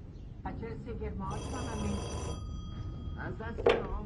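Desk telephone bell ringing once for about a second, its tone dying away over the next second. Voices are heard around it, and there is a short loud sound near the end.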